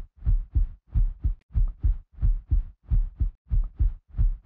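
Heartbeat sound effect: a steady lub-dub double thump, about six beats in four seconds.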